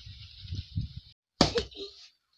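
A hard, round palm fruit is struck down on a concrete slab to soften it, giving one loud, sharp thud about a second and a half in, followed by smaller knocks. Before it there is a low rumble on the microphone.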